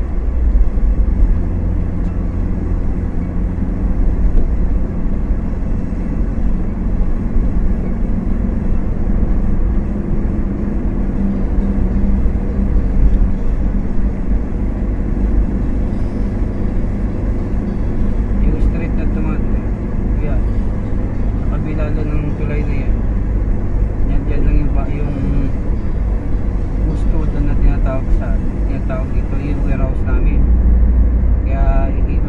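Steady road and engine rumble heard from inside a car's cabin while driving at speed. In the second half a voice is faintly heard under the rumble.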